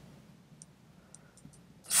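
A few faint, short clicks over quiet room tone.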